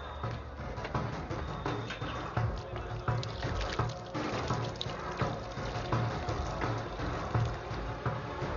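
Film soundtrack music under a busy, irregular run of clicks and knocks.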